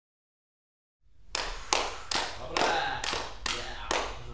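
Slow hand clapping in an empty cinema hall: about seven claps, a little over two a second, starting just over a second in after silence, each with a short echo off the room.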